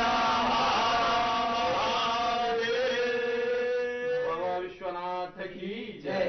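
Hindu priests chanting Sanskrit mantras in drawn-out melodic phrases. A long held note comes about halfway through, then shorter broken phrases near the end.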